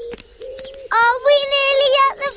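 A young child's high voice, drawn out in a sing-song way on a steady pitch, with a fainter held note before it.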